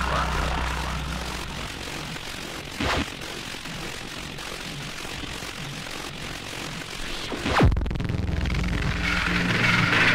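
Breakdown in a hardtek track: the kick and bassline drop out, leaving a noisy, airplane-like synth drone with a short hit about three seconds in. About three quarters of the way through, a fast falling sweep dives into a deep bass hit and the pounding beat comes back.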